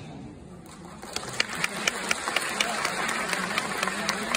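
Concert audience applauding. About a second in, an even percussive ticking about four times a second starts over it: the opening beat of the next song's intro.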